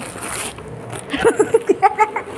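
Plastic shipping pouch being handled and torn open: a short ripping sound right at the start, then several quick crinkles of plastic.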